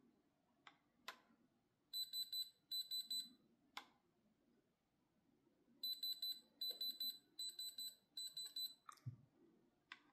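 Handheld electronic diamond tester beeping as its probe is held to a white stone: short high beeps in quick groups of about three, two groups about two seconds in and a longer run of groups from about six seconds in. This is the alert such testers give at a diamond reading. A few faint clicks fall between the beeps.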